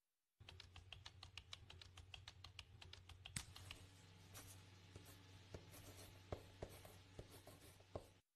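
Faint typing on a laptop keyboard: a quick, even run of key clicks for the first few seconds, then sparser scattered clicks, over a low steady hum.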